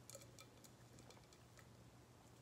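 Near silence: a faint low room hum with scattered small clicks of a person sipping and swallowing a drink from a glass.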